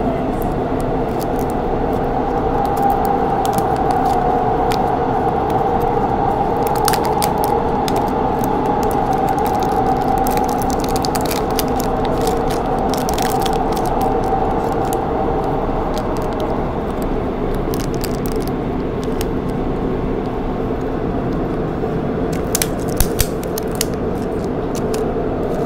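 Shin Bundang Line subway train running steadily, heard from inside the carriage as a loud, even rumble with a low hum. Light clicks and rustles come from a plastic lollipop toy capsule and its wrapper being handled and opened, with a few sharper clicks near the end.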